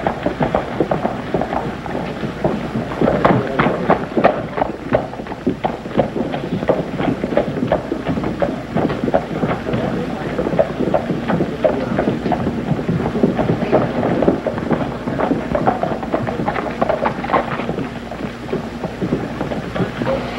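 Busy street ambience on an old film soundtrack: indistinct background voices over a dense, continuous clatter of short knocks.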